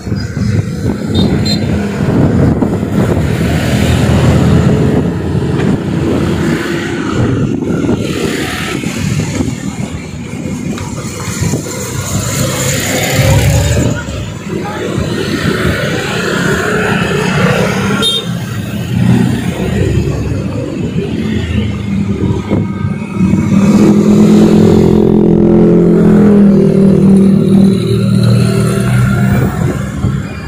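Busy street traffic passing close by: motorcycle and minibus engines running. One engine grows louder late on as it passes near.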